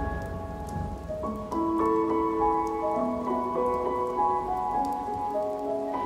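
Slow instrumental music: a melody of long held notes, a few of them sliding in pitch, with the sound of rain pattering beneath it.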